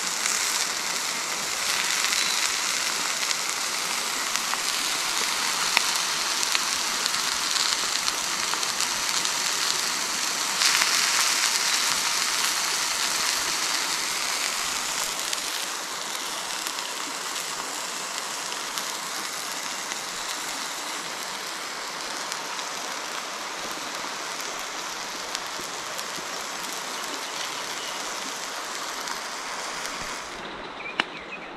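Sausage patties sizzling in a cast-iron skillet on a grate over a campfire, a steady hiss that swells a little partway through. About halfway in, it drops to a quieter, even hiss.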